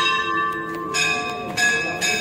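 Hindu temple bells struck about four times in two seconds, each strike ringing on with several clear tones of different pitch, the rings overlapping.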